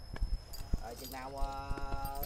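Speech: a voice holding one long drawn-out syllable through the second half, after a few short sharp taps.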